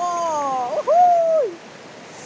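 A high, drawn-out vocal call from a man, sliding down in pitch, breaking, then rising and falling away, about a second and a half long. Under it runs the steady rush of a shallow stream over rocks.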